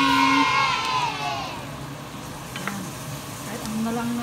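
Minced meat and vegetables sizzling in a frying pan as they are stirred with a spatula, with a couple of light spatula clicks against the pan about halfway through. A voice sounds over the first second or so.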